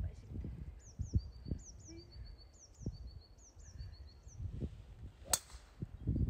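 A golf driver striking the ball on a tee shot: one sharp crack about five seconds in. Before it, a small bird sings a repeated series of high, quick down-slurred notes.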